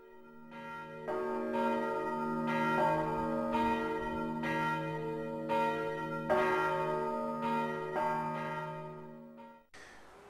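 Church bells ringing, with a new strike about every second over overlapping ringing tones. The sound swells in at the start and fades away near the end.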